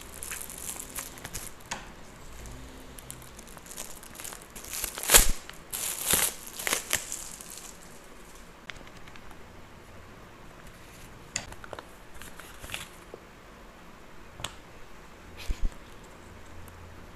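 Shiny gift-wrap paper crinkling and tearing as a present is unwrapped by hand, loudest about five to seven seconds in. After that it quietens to light paper rustling with a few sharp clicks near the end.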